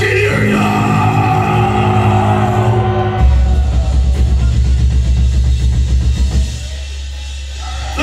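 Metal band playing live, loud: heavy held guitar and bass notes with drums, moving to a deeper held low note a little past three seconds in, then falling to a quieter ringing sound in the last second and a half.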